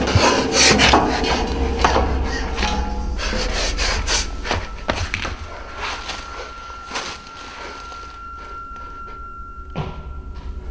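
Scuffing footsteps and knocks on a metal staircase with diamond-plate steps, busy for the first few seconds and then dying away. About halfway through a steady high tone comes in and holds.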